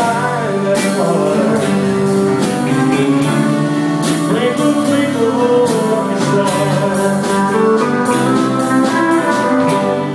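Live country band playing a song in 6/8 time: fiddle, acoustic guitar, electric bass and drum kit, with cymbals marking a steady beat.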